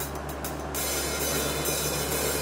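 Band intro of a low steady drone under quick cymbal taps. About a second in, these swell into a continuous cymbal wash as the music gets louder.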